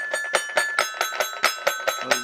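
Little Tikes Jungle Jamboree Tiger toy keyboard playing an instrumental passage: a held, bell-like high note over a fast, even clicking beat of about five ticks a second.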